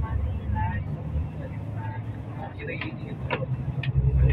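Steady low rumble of engine and road noise heard from inside a moving vehicle, with faint voices and a few sharp clicks near the end.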